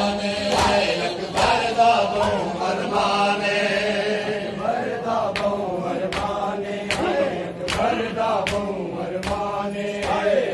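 Men's voices chanting a Punjabi noha (a Shia lament) in unison, with repeated sharp slaps from mourners beating their bare chests in matam.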